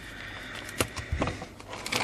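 Handling noise: a small DC motor with its wires trailing being moved about by hand, with a few short light knocks and rustles in the second half.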